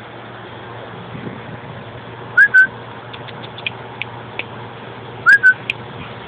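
A person whistling twice to call a dog, about three seconds apart; each whistle is a quick rising note followed by a short held one.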